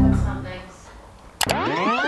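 An electronic sound effect starts abruptly about one and a half seconds in: many tones sweeping up and then back down together, an edited time-passing transition.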